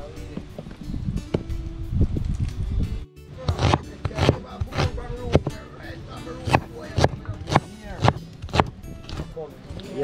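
A steel meat cleaver chopping onion on a wooden cutting board, in sharp repeated chops about two a second from about three seconds in.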